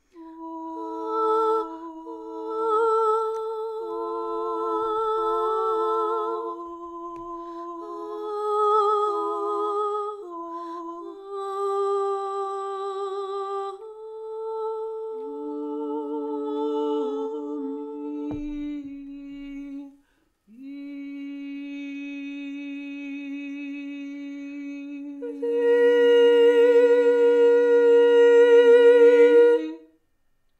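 Recorded unaccompanied voices from a piece for harp and voice, heard in its section without harp. Several voices hold long, overlapping notes, some with vibrato. There is a brief break about twenty seconds in, and the sound grows louder near the end.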